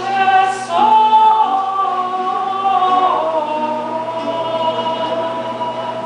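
Two women singing a traditional Ladino song in long held notes that step down in pitch, accompanied by viola da gamba and theorbo.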